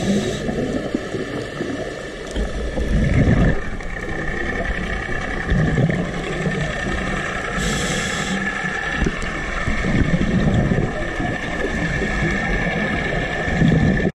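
Scuba diver breathing through a regulator, heard underwater: a short hiss of inhalation near the start and again about eight seconds in, and several bursts of exhaled bubbles in between, over a steady underwater wash.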